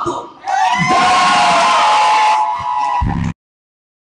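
A long, loud held yell over crowd cheering at a live hip-hop show, starting about half a second in and rising slightly before holding steady. The sound cuts off suddenly a little after three seconds.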